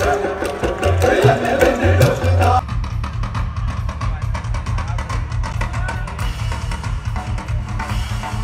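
Live band music over a festival PA, heard from within the audience, with a drum kit keeping a steady beat. About a third of the way in it cuts abruptly to a different song, carried by a steady bass pulse and fast hi-hat ticks.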